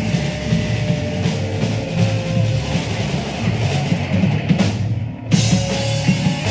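A live rock band playing an instrumental passage on electric guitar, bass guitar and drum kit. About five seconds in, the playing briefly drops out, then the band comes back in together.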